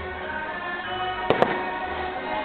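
Two sharp aerial fireworks bangs a split second apart, about a second and a half in, over the fireworks show's music playing steadily.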